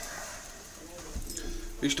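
A quiet pause with only low background noise in a small room, then a man starts speaking near the end.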